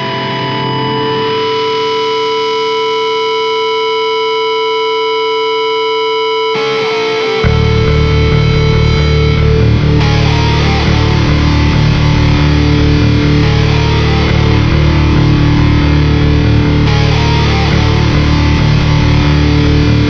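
Opening of a hardcore punk studio recording. A distorted, effects-laden electric guitar rings out alone for about six seconds, then the bass and drums come in with the full band, noticeably louder, and play on.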